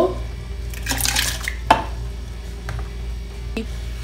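Ingredients splashing into water in a blender jar about a second in, then a sharp clink of a tin can set down on the counter and a couple of lighter knocks, over a steady low hum.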